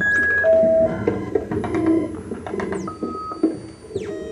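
Electronic tones from a camera motion-triggered Max/MSP patch: short beeps at different pitches over high steady tones, with one high tone gliding down about three seconds in and scattered clicks throughout.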